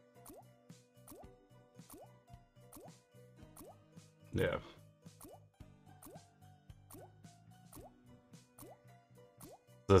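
Slot-game soundtrack on autoplay: soft background music with short rising bubble or water-drop sound effects repeating every half second or so as the reels spin. A brief voice sound comes about four and a half seconds in.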